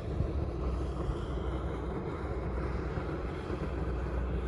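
Wind buffeting the microphone, a steady rushing noise that is heaviest in the low end.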